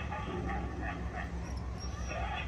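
A dog barking repeatedly, fairly faint, over a low steady background rumble.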